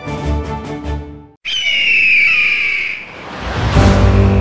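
A pitched music sting ends abruptly about a second and a half in, followed by a single long, falling bird-of-prey screech. A low rumble swells in near the end.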